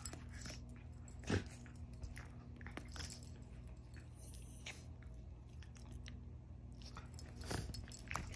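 A Scottish terrier puppy and a West Highland white terrier play-fighting on a bed: scattered soft thuds, scuffles and mouthing snaps of play-biting, with a louder thump about a second in and a flurry of scuffling near the end. A steady low hum runs underneath.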